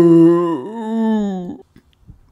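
A man's long, drawn-out 'oooh' with slowly falling pitch and a brief dip partway through. It cuts off about one and a half seconds in.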